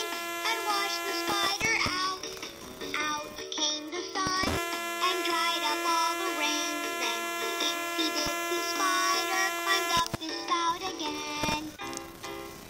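LeapFrog My Pal Violet plush puppy toy playing a children's song through its small built-in speaker: a synthesized tune with a sung voice, with a couple of brief knocks about four and ten seconds in.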